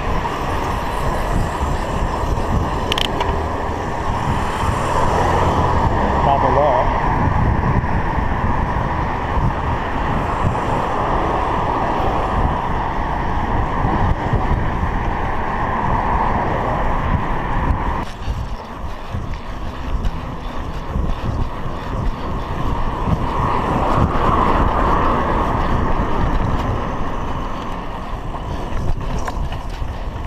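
Steady rush of wind on a GoPro action camera's microphone as a bicycle rides along a road, mixed with the noise of passing motor traffic. The rush swells and eases, dropping briefly about eighteen seconds in.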